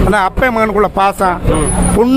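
A man talking in Tamil, with short pauses between phrases, over a steady low rumble.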